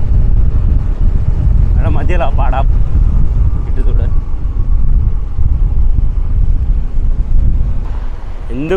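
Steady, heavy low rumble of wind buffeting the microphone on a moving vehicle, with road and engine noise underneath. A short burst of a voice comes about two seconds in.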